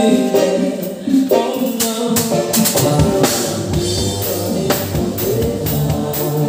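A live rock band playing at full volume: drum kit close and prominent with regular drum and cymbal hits, electric guitar and singing over it. The low end grows fuller about halfway through.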